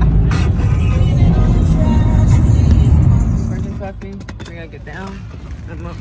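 Road noise inside a moving car's cabin at highway speed: a loud, steady low rumble of tyres and engine. About three and a half seconds in it cuts off, and a quieter stretch with a voice follows.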